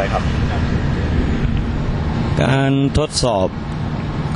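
Steady engine and road noise inside the cab of a Mitsubishi 2500 cc pickup cruising on a highway. A man's voice starts a little past halfway.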